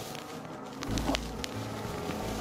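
Cotton candy being squeezed and squished by hands, a faint crackly rustling with a few small clicks, with a low rumble of handling noise from about a second in.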